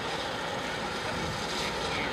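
Steady outdoor background noise: a low, even rumble with a hiss above it, with no distinct events.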